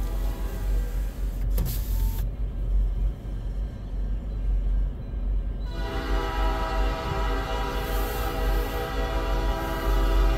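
A low steady rumble, then a little past halfway a freight diesel locomotive's air horn starts sounding one long, steady chord that holds to the end.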